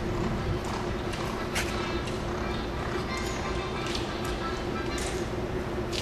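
Hoofbeats of horses working on a dirt racetrack, against a steady low hum and a murmur of voices.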